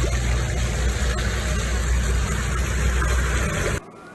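Foamy industrial wastewater gushing through a concrete drain channel: a steady rushing with a strong low rumble. It cuts off abruptly just before the end.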